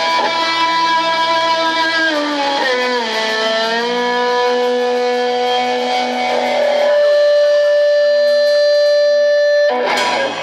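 Live blues-rock band: a distorted electric guitar plays sustained, bent lead notes over bass and drums. It ends on one long held note that cuts off sharply just before the end, closing the song.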